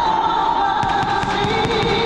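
Stadium pyrotechnics firing: a rapid run of crackling pops starts just under a second in. Under it, a woman holds a long sung note of the national anthem.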